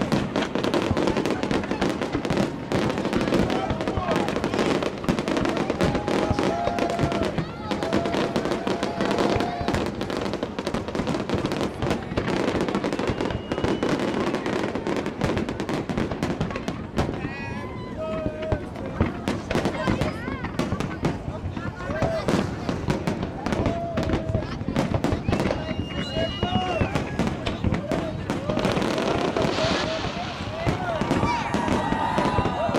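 Fireworks display: a dense, unbroken run of bangs and crackling from many shells bursting at once.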